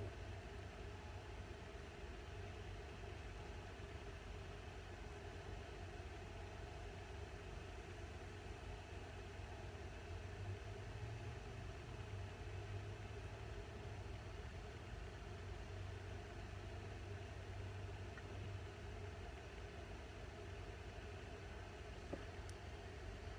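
Quiet room tone: a steady low hum under a faint even hiss, with no distinct events.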